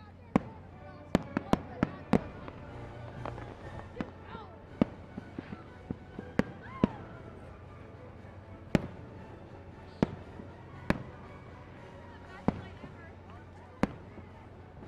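Aerial fireworks shells bursting overhead with sharp bangs: a quick run of about six in the first two seconds, then single reports every second or two.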